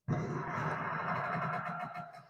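A huge crowd cheering and shouting from a film soundtrack, heard through a computer's speakers. It holds steady and dips near the end.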